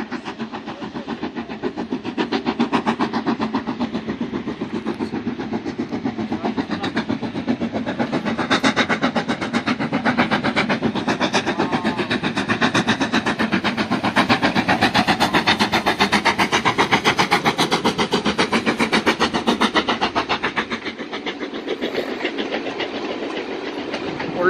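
Steam locomotive pulling a passenger train, chuffing in a fast, even rhythm over the rumble of the coaches on the rails. It grows louder through the middle and fades near the end.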